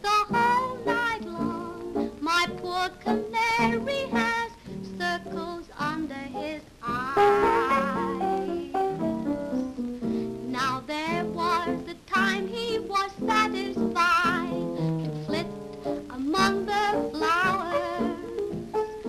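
A woman singing a jaunty 1930s popular song in a wavery tone, with piano accompaniment.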